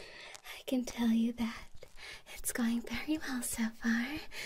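A woman humming a slow tune softly close to the microphone, the notes held and stepping in pitch, with a breathy quality and a few light clicks between them.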